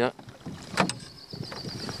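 Choppy water lapping against the side of a canoe, with wind, and a single sharp knock about three-quarters of a second in. A faint thin high steady tone runs through the second half.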